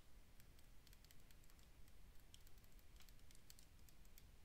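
Faint, irregular clicks and taps of a stylus pen on a touchscreen while handwriting, over a low steady room hum; otherwise near silence.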